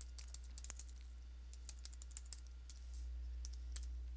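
Faint, irregular keystrokes on a computer keyboard as a username and password are typed into a login form.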